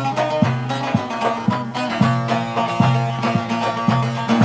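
Instrumental break of a Turkish Aegean folk song: a plucked-string lead plays a melody over a bass line that repeats in even strokes.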